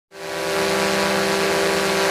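A steady machine-like hum with a hiss over it, fading in quickly at the start and then holding level.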